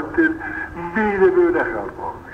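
Speech only: a man's voice delivering a religious lecture.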